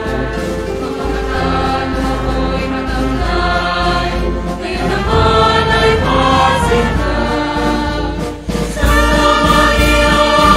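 Choir singing with instrumental accompaniment. It breaks off briefly about eight and a half seconds in, then comes back louder.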